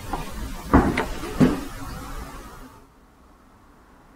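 Three dull thumps over a low rumble, fading to quiet about three seconds in.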